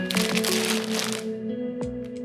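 Crackling and crinkling of a plastic shirt wrapper as it is handled and lifted out of its box, over background music with long held notes.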